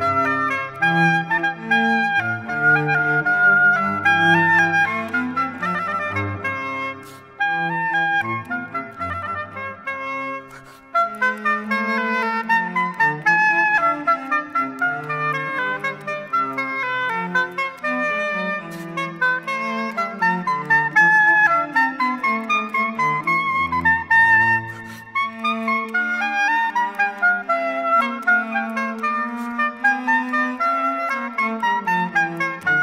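Baroque sonata movement for oboe and cello, played at a lively Vivace tempo: the oboe runs a quick, busy melody over a moving cello bass line. The oboe line breaks off briefly about seven and eleven seconds in.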